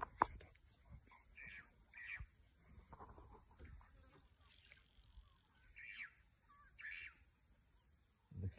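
Quiet bush with a few short bird calls, four of them spread through, each under half a second; a sharp click just after the start.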